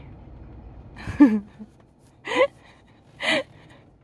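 A baby's breathy, gasping vocalizations: three short sounds about a second apart.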